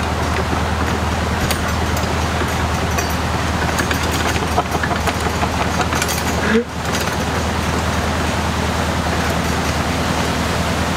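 Narrowboat's 1.5 BMC diesel engine idling steadily, with a constant low hum under a steady rushing noise.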